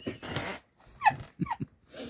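A woman laughing without words: a sharp breath out at the start, then two short high squeaks that fall in pitch about a second in.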